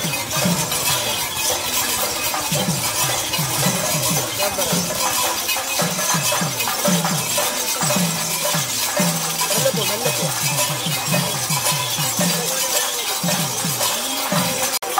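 Procession music: a fast drum beat of short strokes, each falling in pitch, over a steady clatter of metal cymbals.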